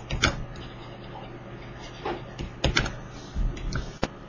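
Scattered light clicks and taps of a stylus on a drawing tablet during handwriting, over a faint steady low hum.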